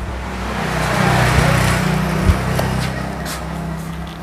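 A motor vehicle running and passing by, its sound swelling to a peak about a second in and then fading. A short knock about two seconds in.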